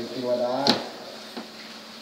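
A man speaking Thai briefly, then one sharp knock about two-thirds of a second in and a faint second click later.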